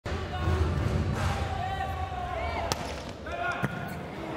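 Volleyball smacking the hard court floor as the server bounces it before serving: two sharp smacks about a second apart in the second half. Behind them is a hall full of crowd noise and voices.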